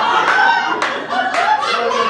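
Theatre audience laughing, with a few scattered hand claps.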